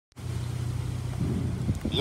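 Steady low mechanical hum, like a vehicle engine idling nearby.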